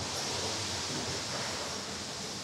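Steady factory-floor background: an even hiss over a low machine hum, with no distinct knocks or strikes.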